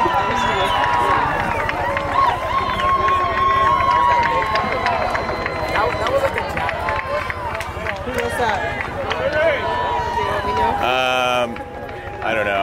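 Many voices shouting and calling at once across an outdoor soccer field: players and spectators during play, overlapping and not close to the microphone, with scattered sharp knocks. Near the end one louder, drawn-out call stands out, and then the voices die down.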